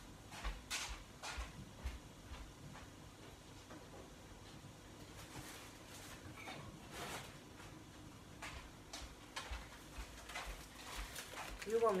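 Footsteps on a hard floor walking away and, near the end, coming back. In between come faint knocks and rustling from a cupboard being opened and searched.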